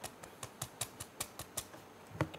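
Steel ball bearings held between two glass plates clicking as the model is tapped by hand. The balls settle into a close-packed arrangement. The clicks are light and irregular, about six a second.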